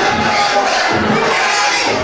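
An audience shouting and cheering loudly and continuously, many voices at once.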